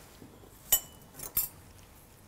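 Two sharp clicks of metal surgical instruments knocking together, about two thirds of a second apart, the first with a brief ring.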